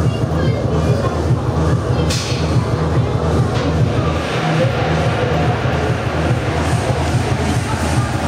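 Muffled, bass-heavy fairground music and rumble, dulled by the denim covering the camera's microphone, with a brief sharp hiss about two seconds in.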